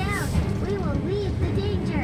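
Sci-fi dome-show soundtrack for a spaceship's super accelerator engaging: a sudden whoosh at the start over a deep steady rumble, with short gliding tones rising and falling throughout.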